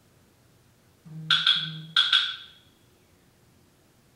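A mobile phone's notification: two short vibration buzzes on the wooden floor together with a bright chime of two double strikes, the second pair ringing out a little longer.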